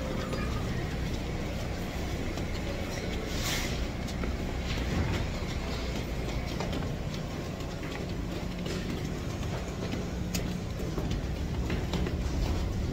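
Passenger train running: a steady low rumble with scattered clicks and rattles, heard from inside the car.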